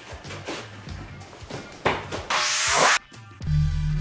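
Background music with a light beat, then about two seconds in a loud swoosh transition sound effect that lasts about a second and cuts off abruptly. Near the end a steady low hum sets in.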